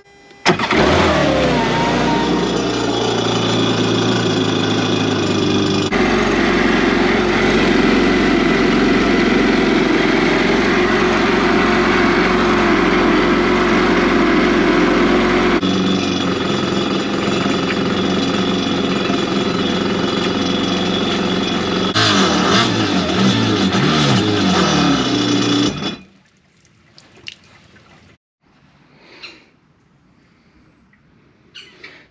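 Kawasaki Ultra 310 jet ski's supercharged, intercooled four-cylinder engine starting up about half a second in and running out of the water on a garden-hose flush, with its pitch rising and falling a few times near the end before it cuts off. The engine is being run to check the newly regasketed exhaust manifold for leaks.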